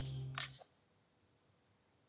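Tail of a channel-logo intro sting fading out: low notes die away about half a second in, while a thin, high electronic tone glides steadily upward.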